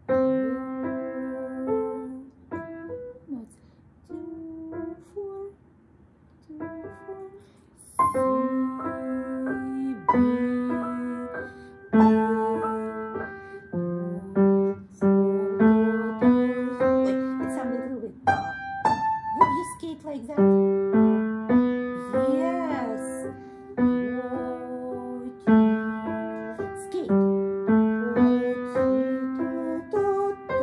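Kawai upright piano played by a young child: a simple melody in single notes, halting with pauses for the first several seconds, then steadier and unbroken from about eight seconds in.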